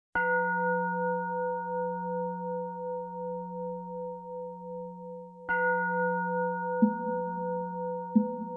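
A bell-like metal instrument struck twice, about five seconds apart, each stroke ringing on and slowly fading over a low hum. A soft low thump comes near the end.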